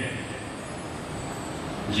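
Steady background noise, an even hiss and rumble with no clear tone, growing slightly louder near the end.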